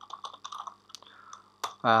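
Typing on a computer keyboard: a quick, uneven run of separate key clicks.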